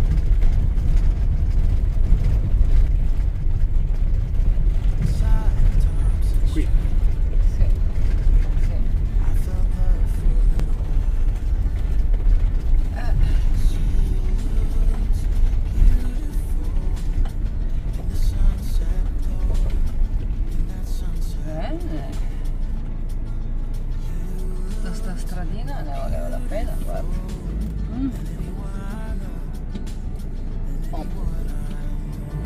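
Camper van driving on a gravel track, heard from inside the cab as a steady low rumble of engine and tyres, easing a little in the second half. A song plays over it.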